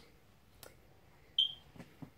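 A single short, high-pitched beep about one and a half seconds in, after a faint click, over quiet room tone.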